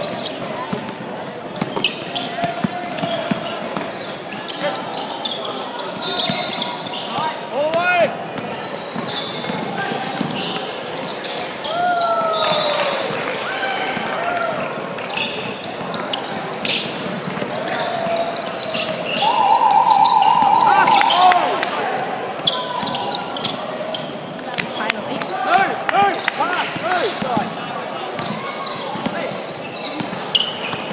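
Basketball bouncing on a hardwood court with short sneaker squeaks, over a steady murmur of players' and spectators' voices, echoing in a large sports hall.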